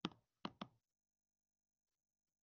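Three faint, quick taps of a stylus on a pen tablet: one at the start and two close together about half a second in, then near silence.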